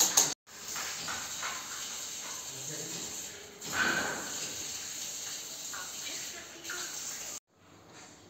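Faint, indistinct voices over a steady hiss-like noise, cut off suddenly near the end.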